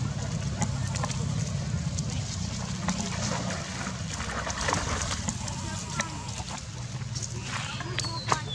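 Water splashing and sloshing as a group of long-tailed macaques swim through a weedy pond, with scattered small splashes and clicks. A steady low hum runs underneath throughout.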